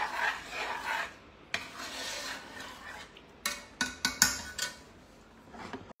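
Metal ladle stirring and scraping through thick lentils in an enamelled cast-iron pot, a rasping sound in uneven strokes, then several quick clinks of metal against the pot past the middle before it goes quieter.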